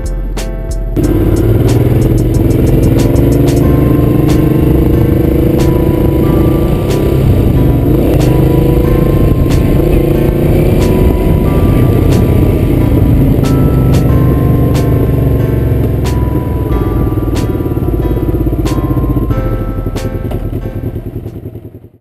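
Honda VT500 V-twin motorcycle engine running under way, its pitch slowly rising and falling with the throttle, mixed with background music. The loud engine sound starts suddenly about a second in and fades out at the very end.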